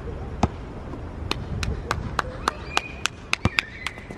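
Basketball dribbled on an outdoor court: a run of sharp, uneven bounces that come quicker in the second half.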